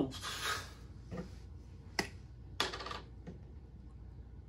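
Small plastic slime cup being handled and opened: a few sharp plastic clicks and taps, the sharpest about two seconds in, and a short scraping rustle just before three seconds. A short breathy noise at the very start.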